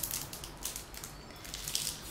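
Makeup brushes being handled: a few short rustles and light clicks, the loudest near the start and near the end.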